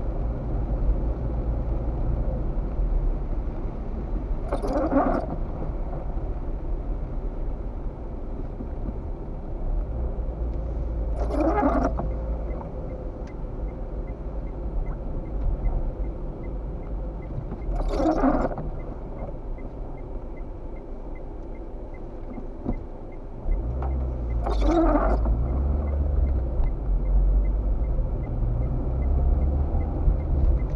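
Inside a car on a wet road: steady low road and engine rumble, with the windscreen wipers swishing across four times, about every six and a half seconds on an intermittent setting. The rumble gets louder about three quarters of the way through.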